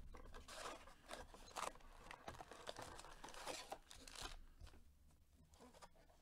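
Faint rustling, tearing and crinkling as a 2020 Panini Prizm football blaster box is opened and its foil card packs are pulled out and stacked: a run of short rustles that dies down about four and a half seconds in.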